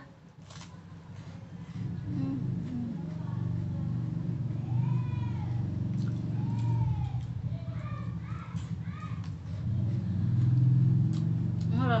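Crunching bites of a chocolate wafer, with a low hummed "mmm" of tasting running through most of it. A few short rising-and-falling calls come in the middle.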